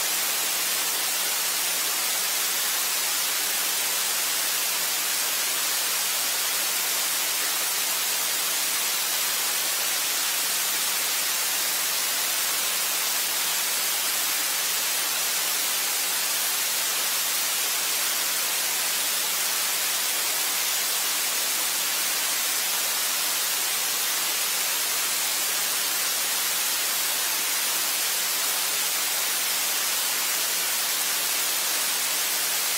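Steady static hiss with a faint low hum underneath, no voices or events.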